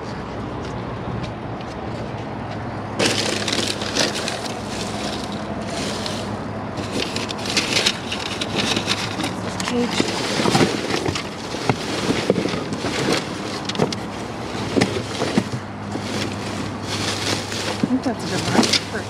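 Plastic trash bags rustling and crinkling with many small crackles as they are rummaged through by hand, starting about three seconds in, over a steady low hum.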